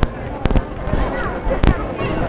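Two sharp knocks, about half a second in and again about a second later, over street background with faint distant voices.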